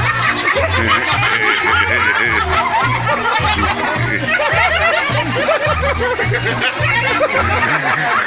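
Dance music with a steady, pulsing bass beat, over a crowd of people laughing and calling out; the music stops near the end.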